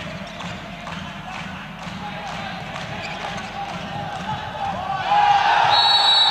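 Indoor handball game: a ball thuds repeatedly on the court over the murmur of players' and spectators' voices. Near the end the voices swell into shouting and a short, high referee's whistle sounds.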